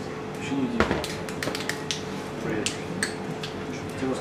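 A scatter of short, sharp clicks and taps from small parts being handled while twisted-pair cable is worked by hand, the loudest about a second in, with a few spoken words over them.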